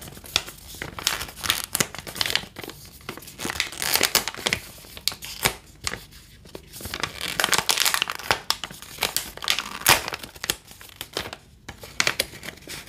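Frosted plastic accessory pouch crinkling and crackling as hands handle it, in uneven bursts of sharp crackles.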